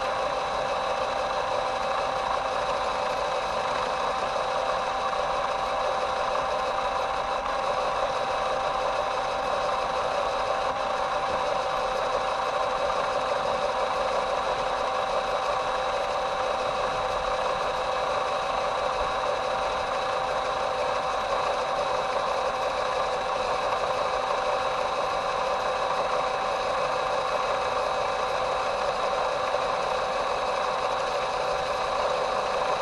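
Electric motor and gear train of a WPL B-1 1/16-scale RC military rock crawler truck whining steadily as it drives slowly, heard close up from a camera mounted on the truck.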